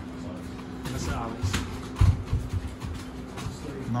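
Gloved punches and kicks landing in Muay Thai sparring: a few sharp slaps and thumps, the loudest about two seconds in, over a faint steady hum.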